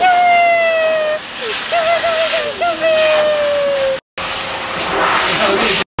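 Young black dog howling at a pet blaster dryer: long, wavering howls that slide down in pitch, over the steady rush of the dryer's air. The sound cuts out briefly twice in the second half.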